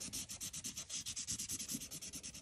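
Black Sharpie marker scribbling rapidly on paper in a quick, even run of short scratchy strokes, filling in a thick black outline.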